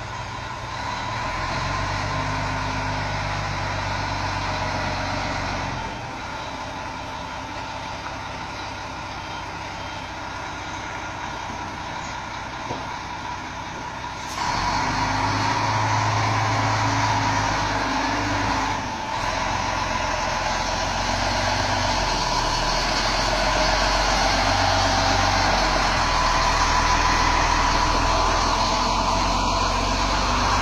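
Heavy truck's diesel engine running steadily as a B-double (Superlink) rig manoeuvres in reverse, its level stepping up and down several times, with a sudden jump to a louder, fuller sound about halfway through.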